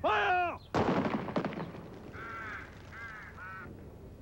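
A shouted command, then a firing-squad volley of rifle shots about 0.75 s in, a loud crack with a few more shots close behind it. A few short harsh bird calls follow.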